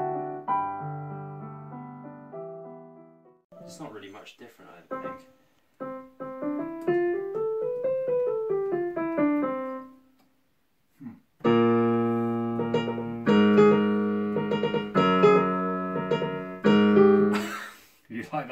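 Yamaha P-115 digital piano being played: held notes that fade, then a run of single notes rising and falling, a short pause, and loud full chords over a held bass. A brief burst of noise comes near the end.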